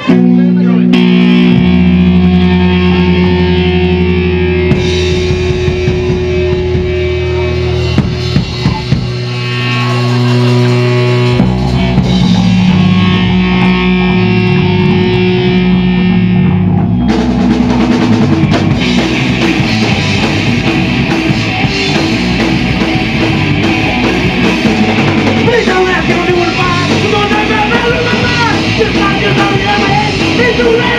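Live punk rock band with electric guitar, bass and drum kit playing the opening of a song: held chords at first, then the full band with drums comes in about seventeen seconds in.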